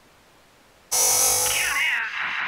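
Intro sting of a news show: about a second of near silence, then a sudden loud hiss-like swoosh, joined by swooping electronic tones that glide up and down.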